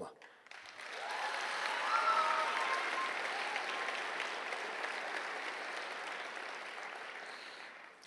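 Audience applause in a large auditorium, swelling about a second in and then slowly fading, with a few voices calling out about two seconds in.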